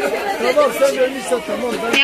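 People's voices talking, with no other sound standing out.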